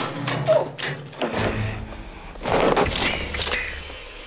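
Metal clanks and rattles from a metal garbage can and a metal armour suit as a body struggles inside it, with a louder burst that has a short metallic ring about two and a half to three and a half seconds in.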